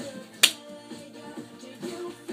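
Music playing, with one sharp snap about half a second in, the loudest moment.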